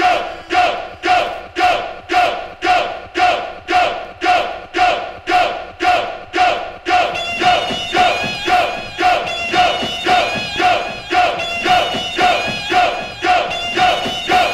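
Music played from vinyl in a trip hop DJ mix: a short pitched stab repeats about twice a second. A higher wavering melodic line joins about halfway through.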